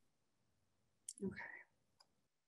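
Near silence, broken about halfway by a short mouth click and a brief breathy vocal sound from a person on a video call.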